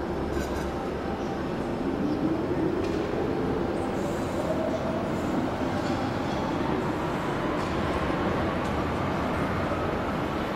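DUEWAG U2-type light-rail train pulling out of an underground station, its traction motors whining in a smoothly rising tone as it accelerates away over a steady rumble of wheels on rail.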